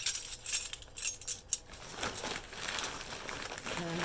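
Metal flatware (spoons and forks) clinking together as the pieces are handled, several sharp clinks in the first second and a half, followed by softer rustling of wrapping.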